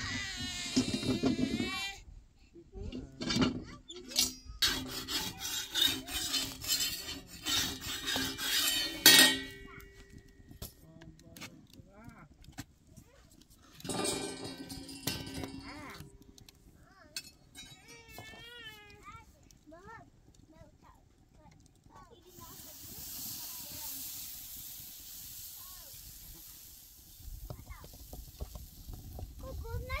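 Metal clinking and scraping of a spatula against a large iron saj griddle as flatbread is turned and lifted off, in clusters in the first half. A steady hiss follows for a few seconds later on.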